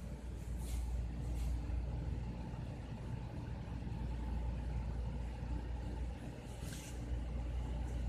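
Steady low background rumble, with a few brief soft hisses.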